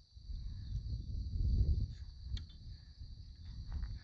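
Steady high-pitched chirring of night insects over a low rumble on the microphone, which is loudest about a second and a half in, with a few faint clicks.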